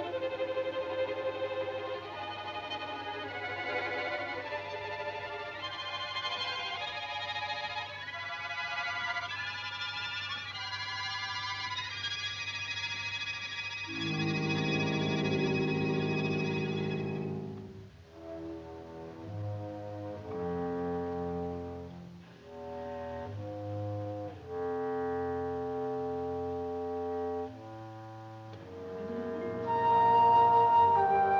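Orchestral film score with brass: a busy passage of many changing notes, then a loud low chord about fourteen seconds in that breaks off about three seconds later, followed by quieter held chords.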